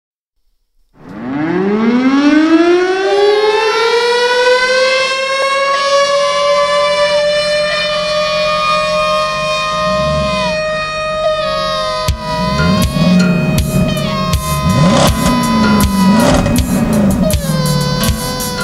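A siren-like wail that rises in pitch over about three seconds, then holds steady with a slight waver, opening a song. About twelve seconds in, low, bending notes and a run of sharp clicks come in beneath it.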